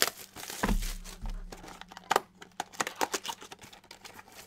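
A trading-card box being opened by hand: its wrapping and packs crinkle and tear in short irregular crackles, with a soft bump about a second in.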